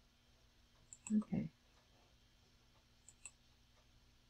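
Faint clicks of a computer mouse: one about a second in, then a quick pair about three seconds in.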